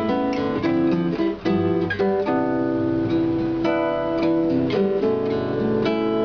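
Nylon-string classical guitar played solo in a bossa nova style, with plucked chords mixed with single melody notes.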